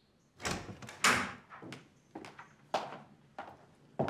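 A wooden door being opened, its handle and latch knocking, with the loudest knock about a second in. A few evenly spaced footsteps on a hard floor follow as someone walks into the room.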